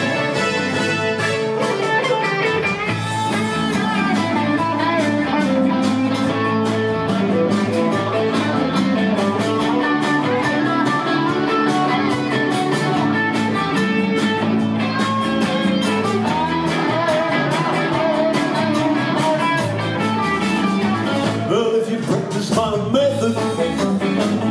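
Live band playing a song: a man singing into a microphone over electric guitars, bass guitar and keyboards, with a steady beat.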